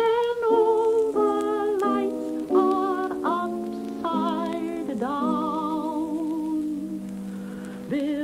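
A solo voice singing a slow nursery song with marked vibrato, moving through a series of held notes. The last note is long, starting about five seconds in and fading near the end.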